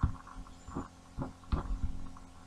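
Dull low thumps and knocks at uneven intervals, about six in two seconds, several bunched near the end, over a faint lingering ring: handling noise after the playing has stopped.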